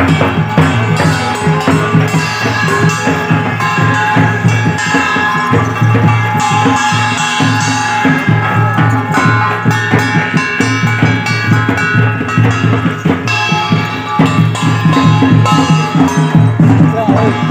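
Traditional procession music: drums beating a fast, steady rhythm, with a held melody over them.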